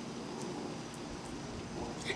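Quiet, steady outdoor background noise with no distinct event.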